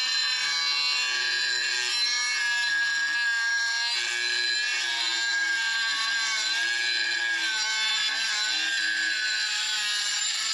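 Milwaukee M12 Fuel cut-off tool with a diamond blade cutting into a tile: a steady high-pitched whine of the motor and blade grinding through the tile, its pitch wavering slightly as the load changes.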